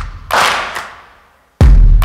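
Background music beat: a sharp clap-like hit that dies away to a moment of silence, then a heavy, deep bass hit about a second and a half in.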